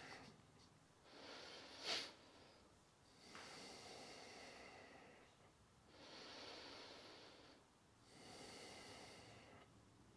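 A man's slow, deep breathing, faint: four long breaths, each lasting about one and a half to two seconds, with short quiet gaps between them.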